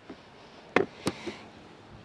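Fuel-filler door of a Hyundai Tucson pushed shut into its push-to-open latch: two sharp clicks about a third of a second apart, the second the crisper.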